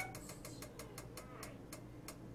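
Faint rapid ticking, about six or seven small clicks a second, over a low steady hum.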